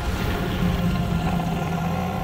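A dragon's deep growl in a film soundtrack: a loud, steady low rumble.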